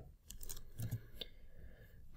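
A few faint, scattered clicks, typical of a computer mouse being clicked.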